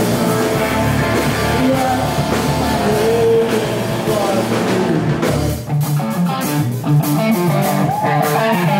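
A rock band playing live: electric guitar over bass and drums. About two thirds of the way in, the deep bass drops out, and the guitar carries on over sharp drum hits.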